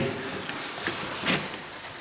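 A large cardboard box being turned and slid across a sheet-metal worktable: a rubbing scrape with a couple of light knocks.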